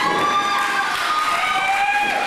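Spectators at a small wrestling show yelling, with several long held shouts at different pitches overlapping over general crowd noise.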